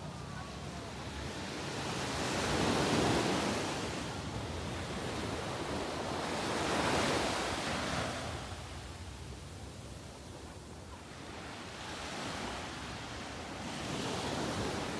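Small waves breaking and washing up a sandy beach. The surf swells twice, a few seconds apart, then more softly near the end.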